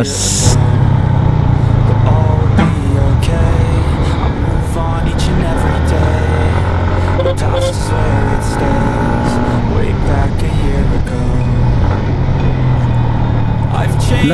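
Motorcycle engine running steadily at road speed with wind noise on the microphone, mixed with background music. A short burst of hiss comes just after the start.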